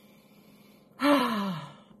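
A woman's long, audible sigh about a second in: a breathy exhale that falls in pitch, after a moment of quiet room tone.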